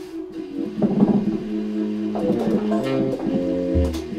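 Improvised jazz: a baritone saxophone and a second saxophone hold long overlapping notes while a drum kit is played with sticks, with a sharp drum hit about a second in and a low note near the end.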